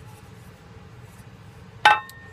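One sharp metallic clink near the end as the metal mess-kit lid knocks against the pot or is set down, ringing briefly after the strike.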